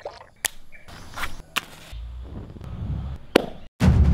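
Four sharp knocks spaced unevenly over a few seconds, the last one loudest, with a low rumble under the second half. The sound cuts off abruptly just before the end.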